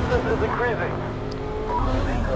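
Car engines running, with a voice speaking over them at first.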